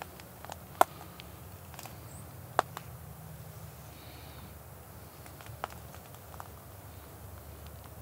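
Quiet woodland ambience with a steady low rumble, broken by a few sharp clicks and light rustles as hands turn a dry whitetail deer shed antler. The two loudest clicks come about a second in and near the third second.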